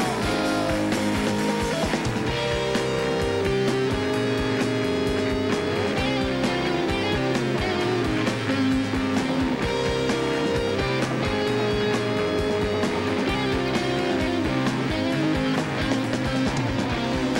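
Live rock band playing an instrumental passage with no singing: electric guitars on sustained notes, some bending in pitch, over a bass line and a steady drum beat.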